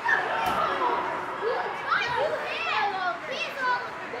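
Many high-pitched children's voices shouting and calling over one another in an indoor ice arena, with a single sharp knock about half a second in.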